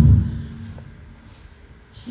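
A loud, deep thump at the very start, then a faint steady hum that dies away after about a second and a half.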